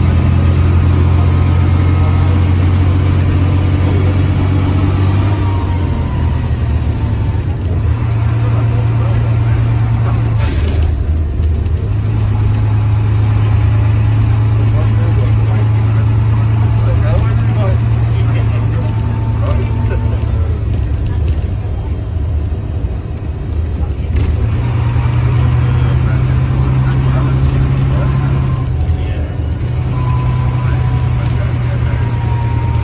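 Leyland National single-decker bus heard from inside the saloon while under way: its Leyland 510 turbocharged diesel drones low, the engine note stepping up and down several times as the bus changes gear. A sharp knock sounds about ten seconds in.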